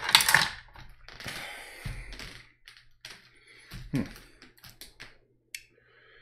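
Paintbrushes clattering and clicking as they are handled while one is picked out. A loud burst of clatter at the start is followed by rustling, a low thump about two seconds in, and scattered lighter clicks.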